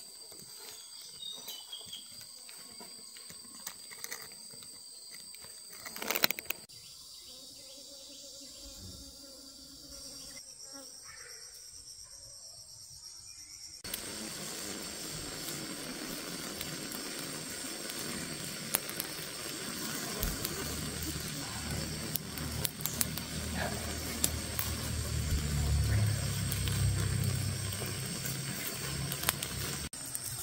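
Insects keeping up a steady high-pitched drone. The background changes abruptly about six and fourteen seconds in, and from there a rougher, louder noise runs on, with a low rumble building in the last ten seconds.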